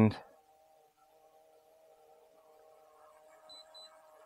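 Near silence: a faint steady hum, with two short faint high beeps near the end.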